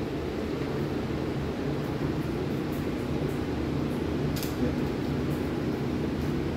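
Steady hum of an electric fan running, even throughout, with one faint click about four and a half seconds in.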